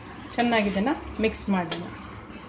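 A steel spoon stirs chunks of colocasia in a black iron kadai, clinking and scraping against the pan. A person's voice sounds briefly in the middle, louder than the stirring.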